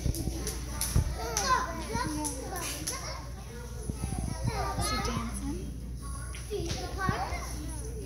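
Many young children's voices at once, overlapping, with a sharp knock about a second in and another near the end.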